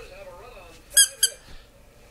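Squeaky tennis-ball dog toy squeezed twice in quick succession: two short, sharp, high squeaks about a second in, a quarter second apart.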